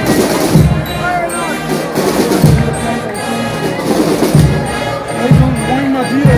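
Street marching band music with bass drum beats, mixed with voices of the crowd.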